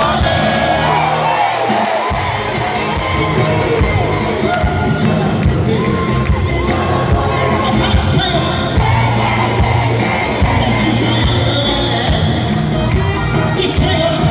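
A live pop band playing with a male singer at the microphone, heard from within the arena audience, with the crowd cheering and singing along over the music. The bass cuts out for a moment about a second in, then the full band returns.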